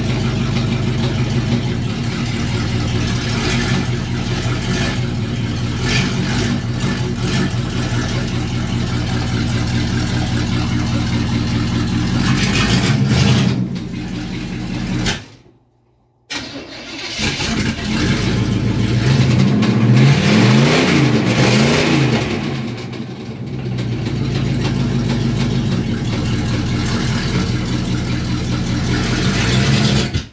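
Old truck's engine running and being revved while it is put through the gears, checked for a knock that the owners fear is a broken connecting rod. It breaks off for about a second halfway, then comes back with revs rising and falling a few seconds later.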